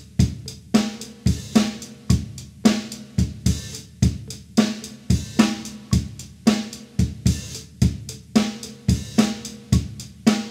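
Drum kit playing an eighth-note groove in 7/4: steady hi-hat eighths over bass drum and snare, in an even repeating rhythm.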